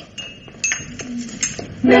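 China coffee cups and saucers clinking on a tray as it is lifted and carried: a few light, separate clinks. Near the end an organ chord comes in and holds.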